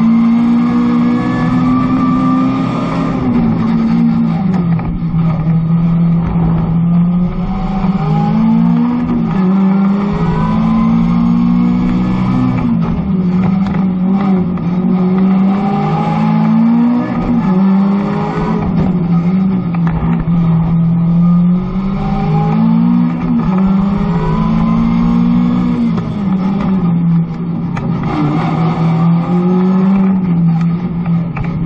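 Mazda MX-5 ND's four-cylinder engine heard from inside the cabin, revving up and dropping back again and again as the car is driven hard between the cones of a slalom course.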